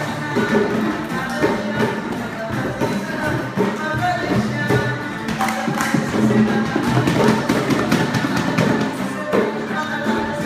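Group hand-drumming on djembes and metal goblet drums, many dense strokes played in rhythm, over acoustic guitar strumming.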